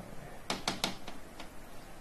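A stylus tapping on the glass of an interactive whiteboard screen: about five sharp taps, three in quick succession about half a second in, then two more spaced out.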